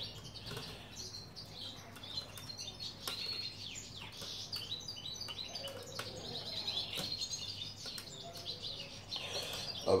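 Small birds chirping and twittering throughout, in short high calls, with a few faint clicks of hands working thread through a wire cage.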